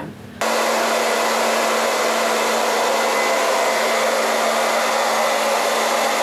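Handheld hair dryer blowing steadily on curly hair: an even rushing blow with a constant low hum underneath. It starts suddenly about half a second in and holds the same level throughout.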